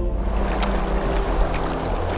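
Water rushing and splashing around a paddled canoe on a fast river, with background music holding steady tones underneath.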